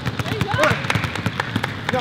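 Basketballs bouncing rapidly on a hardwood gym floor: a player dribbling two balls at once, with other players' balls bouncing at the same time, and voices calling out over them.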